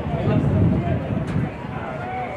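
Indistinct conversation of spectators near the microphone, over outdoor background noise.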